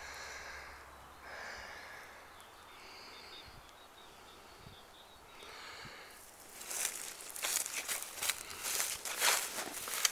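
Footsteps crunching and rustling through dry leaf litter and twigs. They are faint at first and turn into a dense run of crisp crackling steps about six seconds in.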